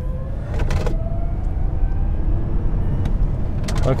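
Electric drive motor of an Xpeng P7 whining and rising in pitch as the car accelerates hard, over steady road and tyre rumble inside the cabin. A couple of short knocks come through, about a second in and near the end.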